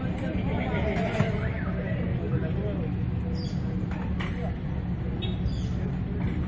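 Indistinct voices of several people talking over a steady low rumble, with a single sharp knock about a second in.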